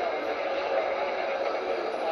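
Steady casino-floor background: a murmur of voices mixed with slot machine game sounds.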